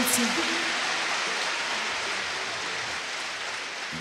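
A steady, even hiss that slowly fades, with no instruments or voice over it; a sung note trails off right at the start.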